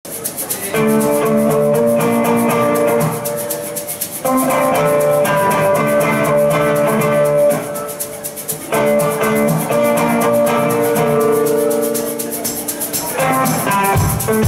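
Electric violin plucked like a ukulele, playing the same short phrase three times, each about four seconds long, with a shaker keeping an even rattling rhythm throughout; no drum kit yet.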